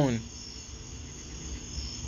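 Crickets chirping in a steady, high-pitched background chorus over a low hum, after a man's single spoken word at the start.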